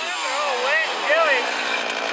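Chainsaw engine falling in pitch as the throttle comes off, then revved up and back down in two short blips.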